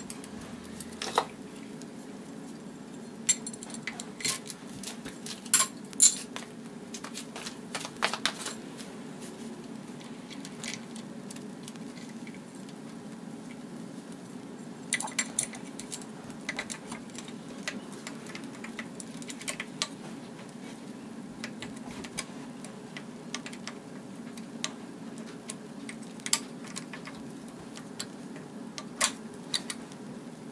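Scattered metallic clicks and clinks of a timing chain and cam gear being handled and fitted on a GM 5.3 V8 block, in bunches with pauses between, over a steady low hum.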